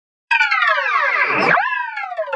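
A logo jingle edited into a layered, stacked-pitch chord of synthetic tones: starting about a third of a second in, the chord slides steadily down in pitch for about a second, then swoops quickly back up and holds.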